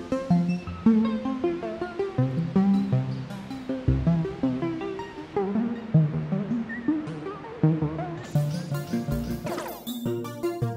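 A synthesizer melody from SynthMaster Player run through the AUFX:Dub delay plugin's cassette-tape presets, its notes echoing with a warbling, wavering pitch under tape noise. Near the end, crackly hiss breaks in as the 'Totally Broken' cassette setting takes hold.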